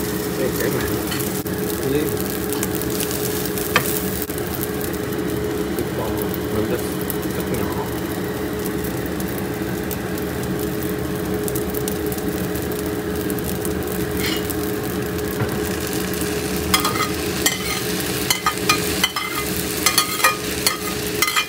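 Rice frying in a cast-iron skillet: a steady sizzle over a steady low hum. Over the last few seconds come a series of sharp clicks and knocks as egg and beef are pushed off a ceramic plate into the pan.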